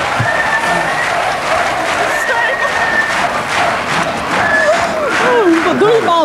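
Studio audience applauding and cheering, with a couple of long high notes rising above the clapping in the first half; excited voices grow over it near the end.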